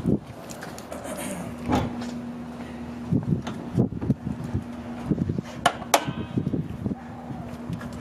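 Hood of a 1994 Honda Civic hatchback being released and lifted: a few sharp clicks and knocks from the latch and hood, the loudest about six seconds in. A steady low hum runs underneath from about a second in.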